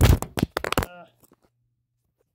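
Handling noise from a phone camera being picked up and repositioned: a quick clatter of knocks and rubbing for about a second, then quiet.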